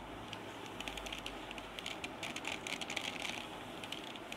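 Plastic 3x3 mirror cube being handled and its layers turned, giving a string of faint clicks that come thickest in the middle of the stretch.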